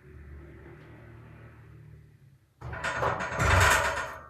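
A man's heavy, effortful breathing while pressing a barbell on a bench: a long, low strained exhale, then a loud forceful breath in the last second and a half.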